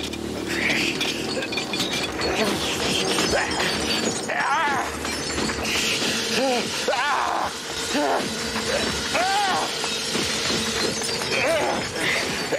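Film sound effects of a runaway soda vending machine: a continuous noisy crackle, joined by a steady hum from about four seconds in. Men's strained groans and cries come in short, rising-and-falling bursts over it.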